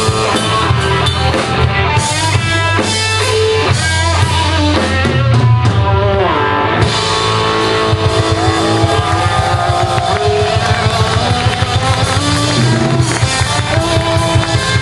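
Live rock band playing loud: electric guitar, bass guitar and drum kit, with a steady beat. The drumming gets busier about seven seconds in.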